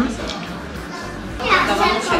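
Background chatter of many voices in a busy dining room, with a nearby voice starting to speak about one and a half seconds in.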